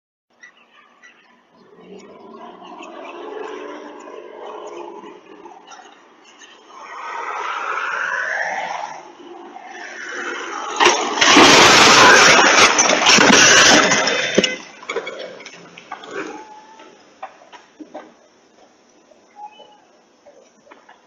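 A small plane's engine drone building and shifting in pitch as it comes in low, then about eleven seconds in a sudden very loud crash as the plane strikes an SUV and erupts into a fuel fireball, a deep rushing noise lasting about three and a half seconds. Afterwards, scattered sharp pops and crackles from the burning wreckage.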